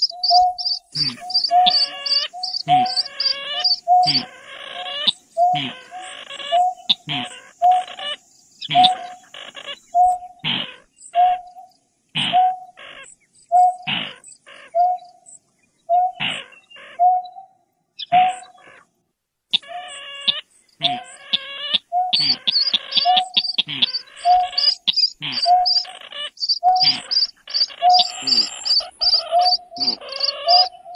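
Recorded calls of greater painted-snipe and rail mixed together: a short low hoot repeating about twice a second, overlaid with harsh rasping notes and stretches of fast high ticking, thinning out briefly about eighteen seconds in.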